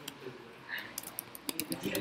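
Typing on a computer keyboard: a quick run of key clicks that starts about a second in.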